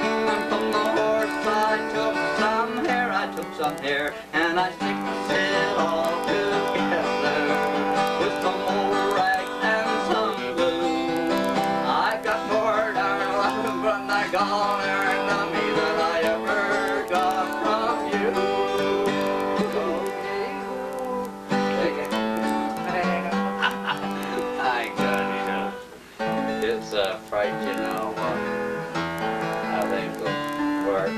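Two acoustic guitars played together in a country-bluegrass style jam, picked and strummed steadily, with a brief drop in loudness about 26 seconds in.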